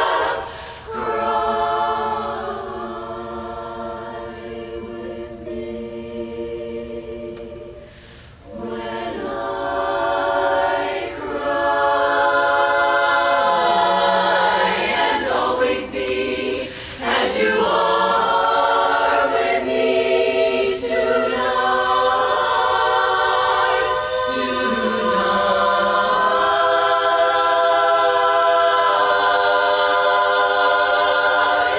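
Women's barbershop chorus singing a cappella in close harmony, with sustained chords. It starts softly, dips briefly about eight seconds in, then swells fuller and louder from about a third of the way through.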